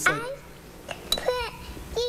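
A child's high voice, with a couple of light clinks of a metal spoon against a dish about a second in.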